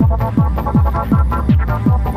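Trance music: a steady four-on-the-floor kick drum, a little over two beats a second with each kick falling in pitch, under a fast arpeggiated synth line.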